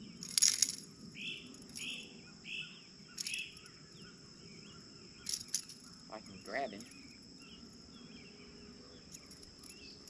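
Outdoor ambience of a steady high insect drone, with a bird giving four short calls in quick succession from about a second in. A few sharp short noises stand out, the loudest just under a second in.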